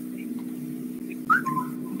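A steady low hum with a short, rising whistle-like chirp a little over a second in, followed by a brief lower steady tone.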